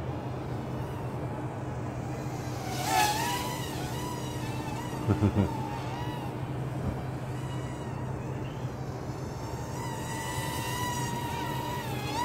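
Hubsan X4 H107D+ mini quadcopter in flight, its small motors and propellers giving a steady high whine that wavers in pitch, with a brief wobble about three seconds in. It is flying on an almost flat battery.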